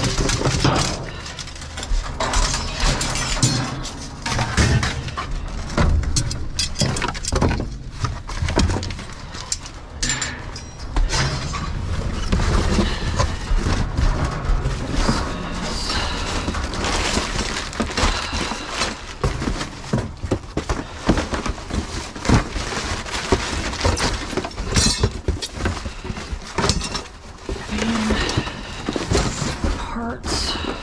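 Cardboard boxes being rummaged through and shoved aside, with clinks and knocks of loose metal hardware: a continual, irregular run of rustles and clatters.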